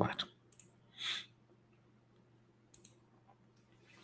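A few short computer mouse clicks, spaced apart, with quiet room tone between them.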